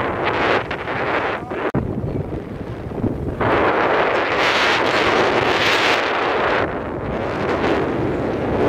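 Wind buffeting the microphone, gusting harder for about three seconds in the middle, over the wash of breaking sea surf.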